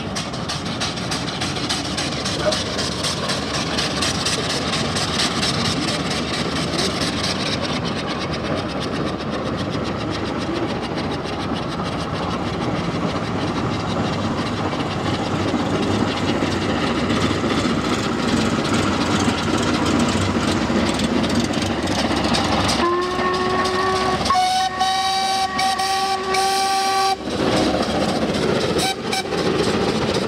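A steam locomotive working hard as its train approaches and passes, a dense steady rush of steam and exhaust. Near the end a steam whistle sounds twice: a short blast, then a longer one at a different pitch.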